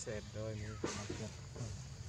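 A brief voice in the first second, then a single sharp click, over a steady low rumble.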